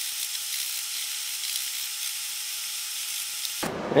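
Scotch-Brite scouring pad scrubbing the white toner-transfer layer off an etched copper circuit board, a steady rasping hiss that cuts off shortly before the end.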